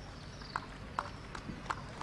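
A few faint, sharp clicks or taps at uneven spacing, about two to three a second, over a quiet outdoor background.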